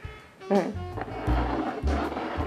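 Background music, with bottle caps scraping over a wooden tabletop as they are shuffled by hand.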